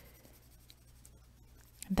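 Faint scratching of a coloured pencil shading on paper.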